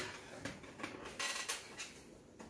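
A series of short, soft handling noises, light clicks and rustles about every half second.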